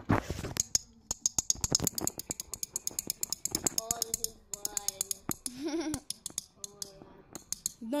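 A rapid run of sharp clicks and rattles as a small plastic object is fingered and turned in the hands inside a cardboard box. The clicking starts about a second in and thins out after about five seconds.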